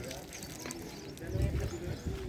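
Background voices of people talking, not close to the microphone. A low rumble comes in about a second and a half in.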